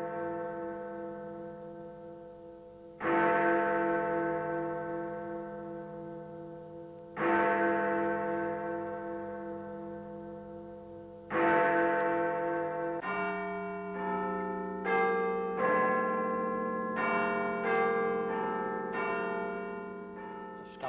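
Large tower bells ringing. A deep bell is struck three times, about four seconds apart, each stroke humming and dying away slowly. Then, about two-thirds of the way in, bells of several different pitches are struck in quicker succession.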